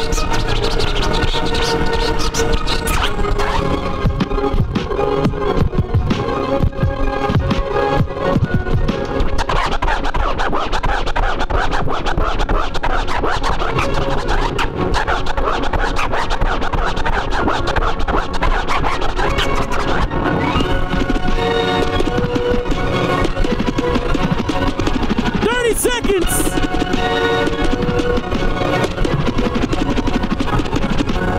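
Turntablist routine: records scratched and cut on Technics turntables through a DJ mixer over a hip hop beat. A run of fast back-and-forth scratches stands out near the end.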